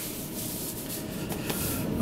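Faint rustling of a stretchy spandex mask as hands rub and tug it into place over the head.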